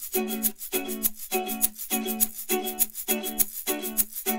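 Background music: plucked-string chords, ukulele-like, repeating in a steady rhythm at a little under two strokes a second.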